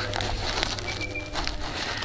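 Outdoor bush background with a short, thin bird whistle about a second in, over a faint steady hum.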